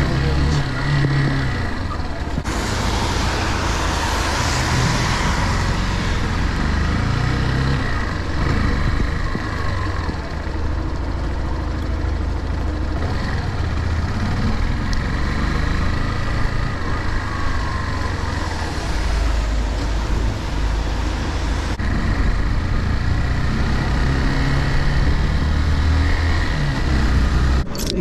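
Motorcycle engine running as the bike is ridden along wet streets, its note rising and falling with throttle and gear changes, under steady wind rush on the camera mic and tyre hiss on the wet road. The rush swells a few seconds in.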